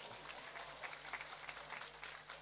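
Audience clapping after a joke: a faint patter of many claps that slowly dies away.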